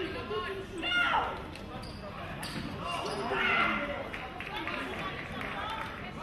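Voices calling and chattering in a large reverberant sports hall, loudest about a second in and again around the middle, with a few dull thuds like footsteps on the fencing piste.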